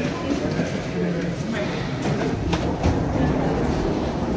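Rolling suitcase wheels rumbling along a corridor floor amid footsteps, with people's voices in the background and a few sharp clicks about halfway through.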